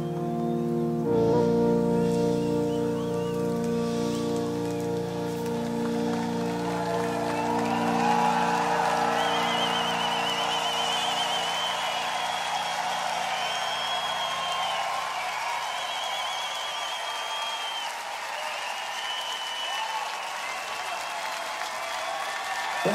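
A held synthesizer chord rings out at the end of a song; its deep bass drops away about a second in and the rest fades over the next dozen seconds. Meanwhile a large crowd's cheering and applause swells, with whistles from the audience.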